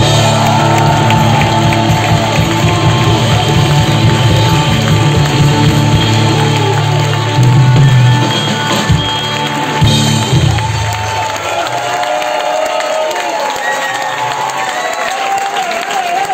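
A live band with drums, bass and electric guitars playing loud. About ten seconds in, the band stops and the crowd cheers and shouts.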